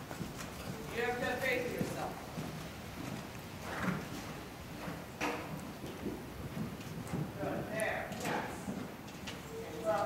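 Hoofbeats of a horse moving at a trot or canter on the sand footing of an indoor arena, with a voice talking at times.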